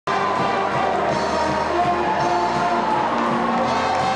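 A pep band's brass section playing held notes over a steady drum beat.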